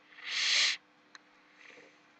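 A short hiss lasting under a second that swells and then cuts off suddenly, followed by a single faint click.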